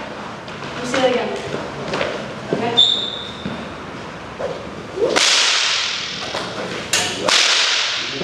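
A whip being lashed: a long swish about five seconds in that fades away, then two sharp cracks close together near the end. A brief high squeak comes about three seconds in.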